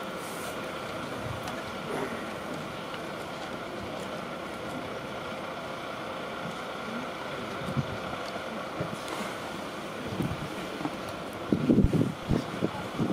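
Steady outdoor background noise at a ballpark, with a few low thumps on the microphone near the end.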